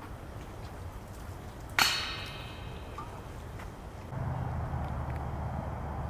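A disc striking a metal disc golf basket: one sharp metallic clang that rings for about half a second. A few seconds later a steady low rumble sets in.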